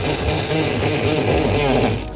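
A handheld power tool running hard for about two seconds, its motor pitch wavering; it starts and stops suddenly.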